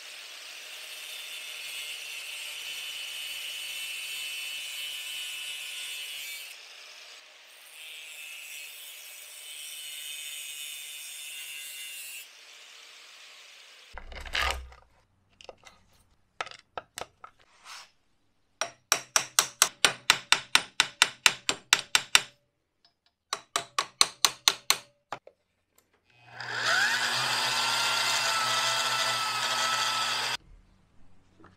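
An angle grinder with a cutoff wheel runs in two stretches of several seconds, grinding down the pins of a #40 roller chain to break it without a chain press. Then come two quick runs of sharp taps, about five a second and louder than the rest. Near the end an electric gear motor starts with a rising whine and runs steadily, driving the indexer's chain and sprockets.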